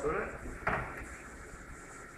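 A single short knock about two-thirds of a second in, like a small hard object being set down on a surface, over a low steady hum.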